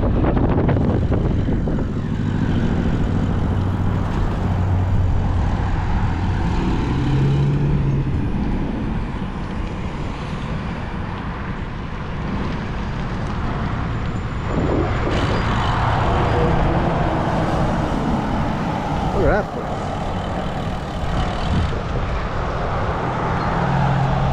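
Continuous wind rumble on the microphone of a bicycle-mounted camera while riding, with road traffic passing, and a louder swell of vehicle noise a little past the middle.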